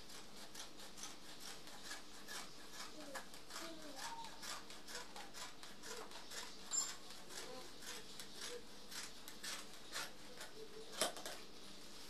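Dressmaking scissors snipping through mikado fabric: a long, even run of quick, crisp cuts, one stroke after another, with a louder snip near the end.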